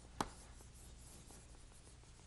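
Chalk scratching faintly on a chalkboard as a name is written, with one sharp tap a fraction of a second in.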